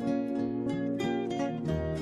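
Background music played on plucked strings, a steady run of quick notes with a lower bass note coming in near the end.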